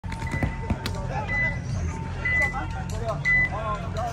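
Electronic beeping from a paintball field's game timer: a held lower tone for about the first second, then short, higher beeps about once a second, like a countdown.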